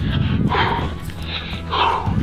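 A man panting out of breath while running, a short voiced gasp roughly every half-second.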